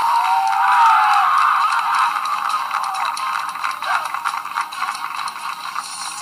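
Television audio picked up thin and tinny by a phone held at the screen: a gliding music line fades out in the first second or so, followed by a dense, clattering, noisy commotion.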